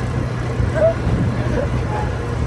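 A small tractor's engine running with a steady low drone as it drives along, carrying riders.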